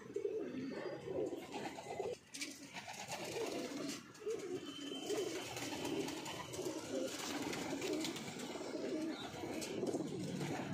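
Domestic pigeons cooing, a run of low coos one after another with short breaks about two and four seconds in.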